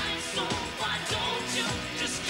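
Synth-pop song: a male lead vocal over synthesizer keyboards and a steady drum beat, about two beats a second.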